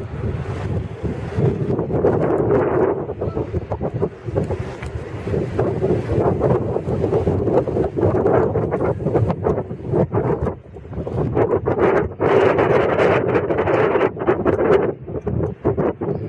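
Wind buffeting the camera microphone: a loud, gusty rumble that swells and drops unevenly, easing briefly a little past halfway.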